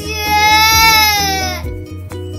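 A three-year-old boy crying: one long wail of about a second and a half that sags slightly in pitch and breaks off. Background music with plucked notes and a steady bass runs underneath.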